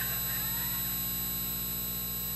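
Steady electrical hum with a buzz.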